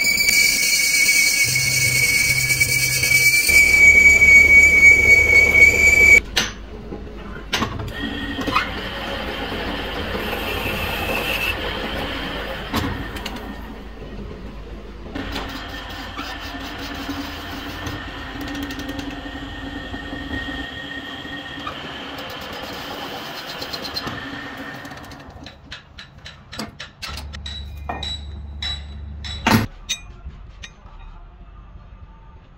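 Metal lathe cutting the bore of a steel pillow block housing: the tool squeals with a loud, steady high-pitched whine for about the first six seconds, then cuts more quietly with a fainter whine. Near the end, a quick run of sharp metallic taps.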